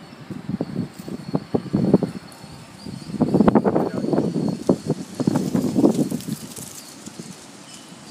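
Dog snorting and snuffling in irregular bursts, loudest from about three to six seconds in.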